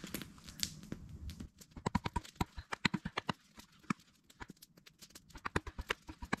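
A knife blade being worked down into a short stick of wood to split it: a run of quick, irregular clicks and small cracks, densest in the middle, with a few more near the end.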